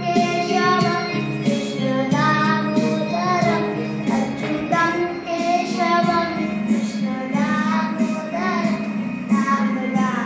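A young boy singing a melody, his voice gliding between held notes, accompanied by sustained chords on a Yamaha electronic keyboard.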